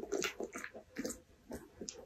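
A dog licking and chewing a treat with its nose in a basket muzzle: a run of short, irregular clicks and smacks.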